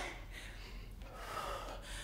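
A woman's faint breathing through the effort of squatting with a dumbbell held at her chest.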